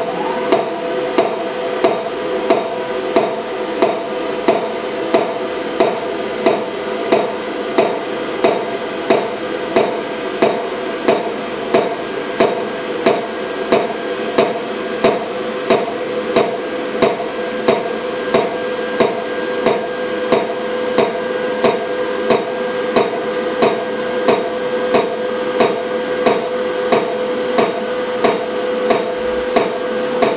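Xenex pulsed-xenon UV disinfection robot flashing its lamp, each flash a sharp click, about three every two seconds in an even rhythm, over the machine's steady hum.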